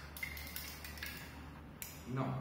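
A nail on a thread lightly tapping a small glass beaker of copper sulphate solution: a faint clink with a brief ring about a quarter second in and a sharp click near the end, over a low steady hum.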